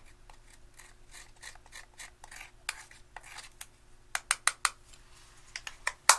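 Metal spatula scraping pressed eyeshadow out of its compact, a run of short repeated scrapes, followed a little after four seconds in by a quick series of sharp taps and a few more just before the end.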